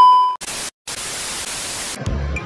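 An edited-in pause effect: a short, loud beep that fades within half a second. Then comes hiss-like TV static, broken once by a brief silence and then steady.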